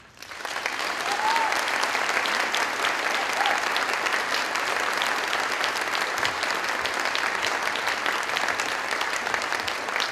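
Large audience applauding steadily, the clapping swelling up over the first second and then holding, with one brief call from the crowd about a second in.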